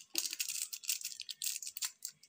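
A Maggi masala seasoning sachet shaken over a pan of noodles: quick, rattling, high-pitched rustles of the packet and powder, stopping shortly before the end.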